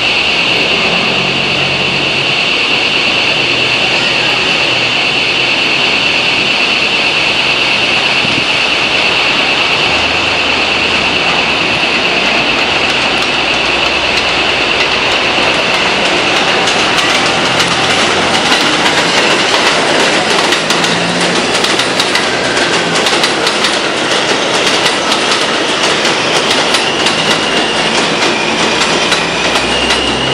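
R160A subway train on an elevated steel structure, approaching and pulling into the station. A steady high-pitched squeal fills the first half and fades. From about halfway the wheels clack rapidly and irregularly over the rail joints as the cars roll in close.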